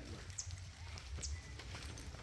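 Quiet outdoor background: a steady low rumble with a few faint, short, high-pitched chirps scattered through it.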